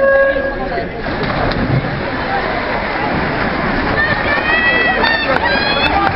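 Electronic start beep, a short steady tone at the very start, then spectators shouting and cheering over the splashing of swimmers racing freestyle. The shouting grows louder near the end.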